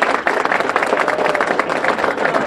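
Audience applause: many hands clapping in a steady, dense patter.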